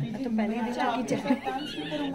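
People's voices talking over one another, with one voice holding a steady tone briefly early on.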